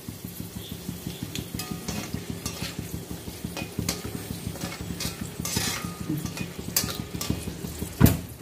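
Dried red chillies and curry leaves frying in hot oil in a wok, with a steady crackling sizzle. A metal slotted spatula stirs them, with scattered sharp clicks and scrapes against the pan.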